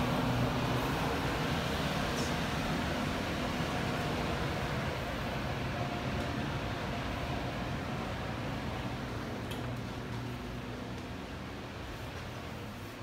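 Blower door fan running steadily, pulling air out through the door frame to put the house under negative pressure: a low hum under a rush of air, growing gradually fainter.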